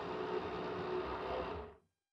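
Countertop blender motor running at speed, whirring steadily as it purées a thick green herb-and-spice paste; it stops abruptly near the end.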